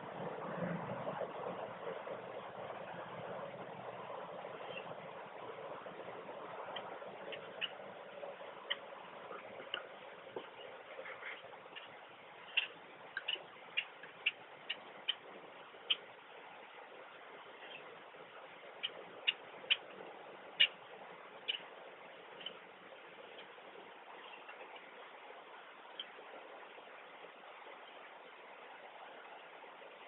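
Small sharp clicks and ticks of fishing tackle being handled while braided line is tied to a cowbell trolling rig. They come irregularly, in two bunches through the middle, over a faint hiss.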